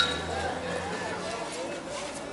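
Indistinct voices of people standing around outdoors, with a sharp click right at the start.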